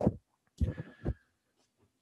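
Handling noise from an AKG 451 microphone as a foam windscreen is pushed over its capsule: three short, dull thumps and rubs, heard close up through the mic itself.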